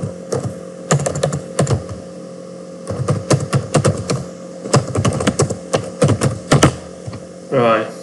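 Typing on a computer keyboard: two runs of quick keystroke clicks with a short pause between them, as a phrase is typed into a text field. A brief vocal sound follows near the end.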